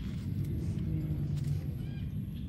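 Steady low rumbling outdoor noise, with a couple of faint clicks and a faint high chirping call near the end.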